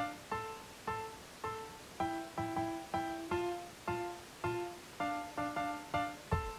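Background music: a light instrumental melody of short, decaying plucked or struck notes, about two a second.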